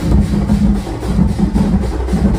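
Large procession drums beaten hard in a fast, steady rhythm, loud and heavy in the low end.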